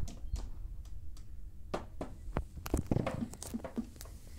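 Irregular light knocks, clicks and clatter of toy dolls and small plastic furniture being handled and set down inside a wooden dollhouse, busiest about three seconds in.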